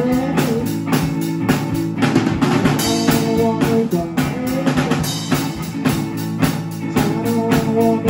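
A Peavey drum kit and a guitar playing a slow song together: a steady beat of bass drum and snare strokes under held guitar notes.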